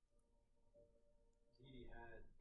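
Near silence: quiet room tone with a faint steady hum. A faint voice sound starts near the end.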